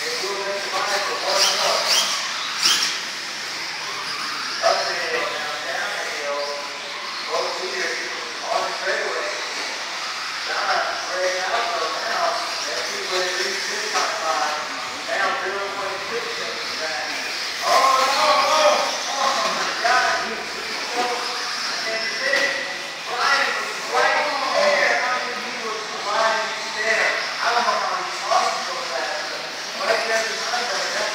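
Indistinct voices talking throughout, over a steady high hiss.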